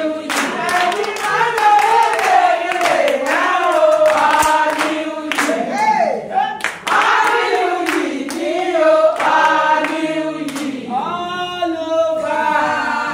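A group of women singing together, with hand claps sounding sharply through the song.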